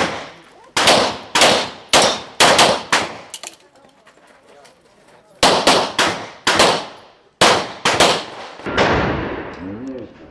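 Rapid pistol fire on a practical-shooting course: a quick string of about six shots, a pause of about two seconds, then another string of about eight shots. Each shot trails off in a short echo.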